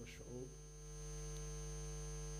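Steady electrical mains hum on a live broadcast audio feed, with a faint voice in the first half second.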